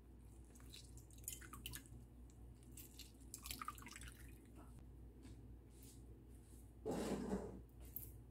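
A metal spoon stirring liquid in a ceramic bowl, with faint drips, splashes and clinks, and a thin stream of liquid poured in around the middle. Near the end there is a brief, louder knock and rustle, the loudest sound.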